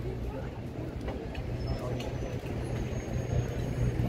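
A steady low engine hum from passing motor traffic, with crowd voices in the background.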